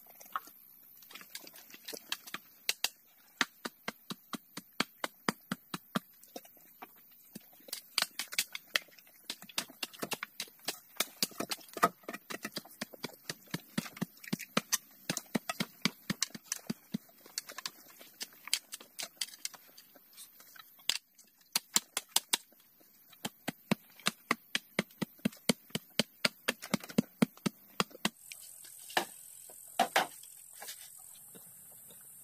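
Sharp wooden knocks, irregular but often two or three a second, of bamboo poles being handled and knocked into place on a pole frame. A steady high hiss runs behind them.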